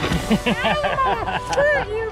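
Several people laughing in quick, short bursts.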